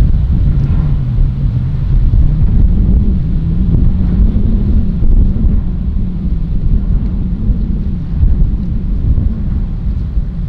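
Strong wind buffeting the microphone, a loud low rumble that swells and eases unevenly.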